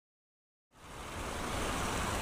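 Silence, then about two-thirds of a second in, the steady rush of flowing creek water fades in and holds.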